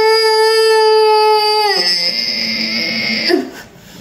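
A woman in labour crying out as she bears down in a push: one long, high, steady wail that drops about two seconds in into a lower, rougher cry and then fades. She is letting her voice out with her mouth open, which the birth coach calls the wrong way to push.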